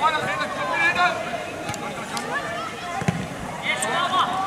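Voices calling out across a football pitch, with one sharp thump of the ball about three seconds in.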